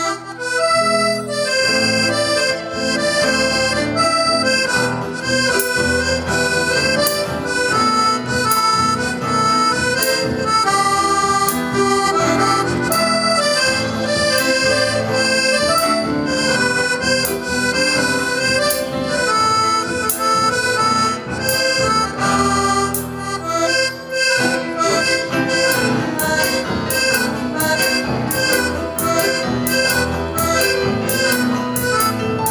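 Accordion playing a lively tune live, accompanied by a strummed acoustic guitar; the rhythm gets busier in the last few seconds.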